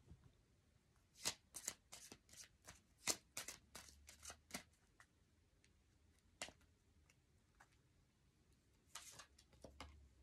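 A deck of oracle cards being shuffled and handled by hand. There is a run of quick, light card snaps for about three seconds, a single click a couple of seconds later, and a short rustle of cards near the end.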